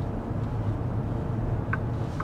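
Steady low road and tyre rumble heard inside the cabin of an XPeng G6 electric SUV cruising through a road tunnel, with no engine note.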